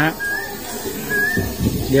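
An animal's short, high chirping call, each note rising slightly, repeated about once a second, with a low rumble near the end.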